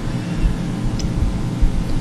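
A steady low rumble of meeting-room background noise, with no speech.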